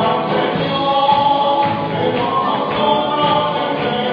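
Group singing of a gospel praise song with a live church band, loud and continuous, recorded in the room.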